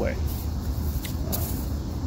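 Low steady background rumble, with a brief crinkle of a nylon stuff sack being handled a little past halfway through.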